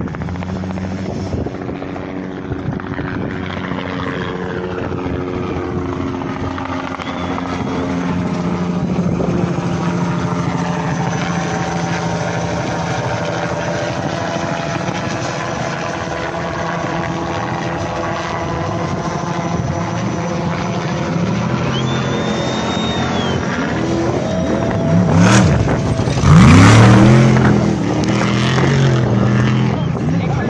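Off-road race truck engine coming up the course and passing close at speed, its pitch rising and falling as the throttle is worked, loudest a little before the end. Before that a steady engine drone carries from farther off.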